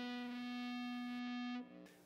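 Distorted electric guitar holding a single note: the 9th fret on the 4th string, reached by a slide up from the 7th. It sustains steadily, then is cut off about one and a half seconds in.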